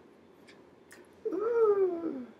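A woman's wordless vocal sound, one drawn-out tone that starts about halfway in and slides down in pitch for about a second, with a few faint hand clicks before it.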